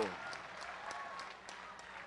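Audience applauding, a steady, fairly faint clatter of clapping that eases a little after the middle.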